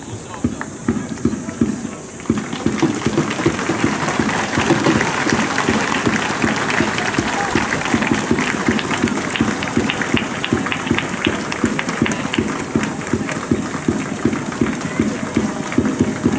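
Spectators clapping steadily, mixed with crowd voices, at a baseball ground after a home-team win. The clapping thickens into fuller applause a couple of seconds in.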